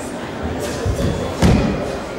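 Bare feet stamping and landing on a wooden hall floor during karate kata, a few dull thuds with the loudest about one and a half seconds in, over a background of hall murmur.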